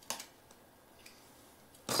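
Faint handling noises: a short rustle at the start, two faint ticks, and a louder brief rustle right at the end.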